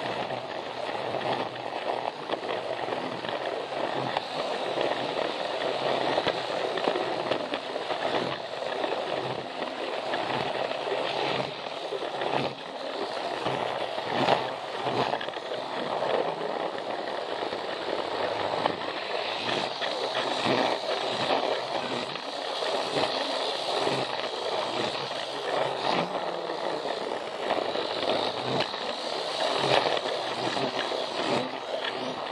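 A Plarail battery-powered toy train running steadily along plastic track, its small motor and gears whirring and its wheels rolling over the rail joints.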